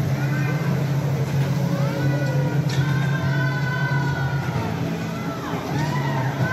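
A mall's children's ride-on train running with a steady low hum, with voices over it.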